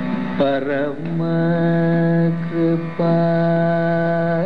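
Carnatic classical music: the melody line moves through a quick, wavering ornamented phrase near the start, then settles into long, steady held notes, with a short break about three seconds in.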